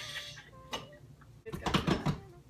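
Plastic granola bar wrapper crinkling as it is opened by hand: a single click a little under a second in, then a quick cluster of crackles near the end, the loudest part.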